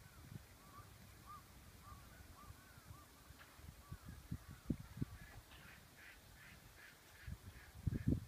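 Bird calls: a series of short repeated calls about two a second, then a faster run of sharper calls later on. A few low thumps, louder than the calls, break in around the middle and at the end.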